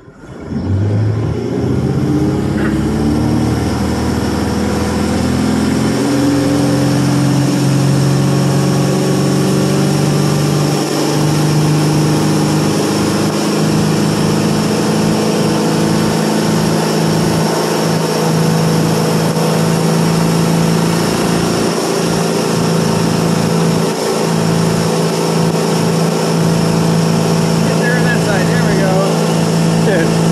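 Ski boat engine opening up to full throttle, its pitch climbing over the first dozen seconds as the boat accelerates with a skier on the tow rope. It then runs steady at speed under a constant rush of water and wake against the hull.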